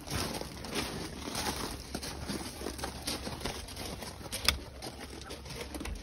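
Razor-blade scraper rasping in irregular strokes against a vinyl decal on a truck's rear window glass, with a sharp click about four and a half seconds in.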